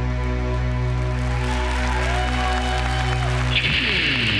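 Electronic backing music: a held low droning chord with a swell of noise building over it, changing shortly before the end into downward-gliding pitch sweeps.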